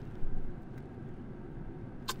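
Steady low rumble of a car's interior ambience, with a brief faint sound about a quarter second in.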